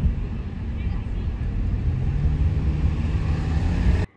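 Low, steady rumble of a car driving in city traffic, heard from inside the cabin.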